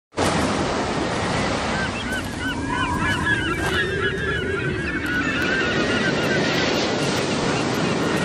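Sea surf washing steadily, with a flock of birds calling over it: a dense run of short calls from about two seconds in, thinning out after five seconds.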